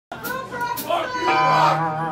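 Voices in a bar crowd, then one long, low, held call that starts just over a second in and is the loudest sound.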